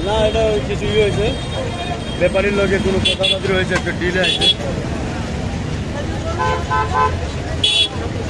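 Busy roadside with a crowd talking and vehicle horns honking: short high toots about three and four seconds in and again near the end, and a quick run of four lower beeps just before that.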